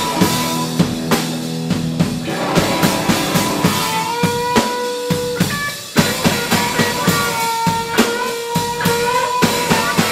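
Live rock band playing loud: fast drum kit hits with cymbals and bass drum under held electric guitar chords. A short drop in loudness just before six seconds ends in a sharp hit as the band comes back in full.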